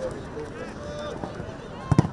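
Faint voices of players and spectators on a grass football pitch, with one sharp thump near the end as a foot strikes the football.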